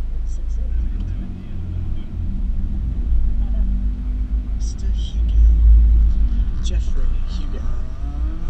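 Honda CRX engine running at low speed as the car rolls slowly through the grid: a steady low rumble that swells about five to six seconds in.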